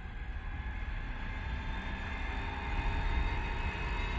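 Diesel engine of a Kenworth semi-truck running with a deep, steady rumble that grows gradually louder as the truck approaches.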